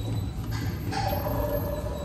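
A plastic water bottle being handled and set under a drinking-fountain spout, with a couple of light knocks about half a second and a second in, over a steady low hum.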